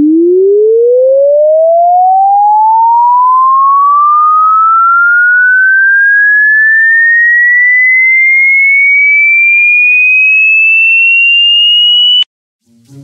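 A single pure electronic tone sliding slowly and steadily upward in pitch, from a low hum to a high whistle. It is a tone sweep played to a dog as a sound that is meant to confuse dogs.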